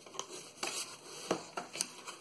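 Paper and cardboard packaging being handled by hand: a handful of light taps and rustles.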